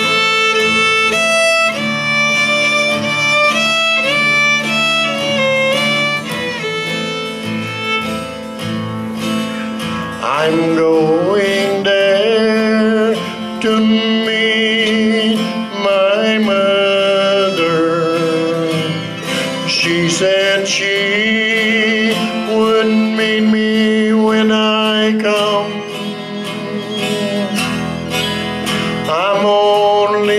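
Live acoustic fiddle and guitar music in a country style. The fiddle carries a stepwise melody at first, then from about a third of the way in plays with slides and vibrato over a steady guitar accompaniment.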